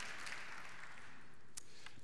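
Congregation applause dying away, thinning to a few scattered claps near the end.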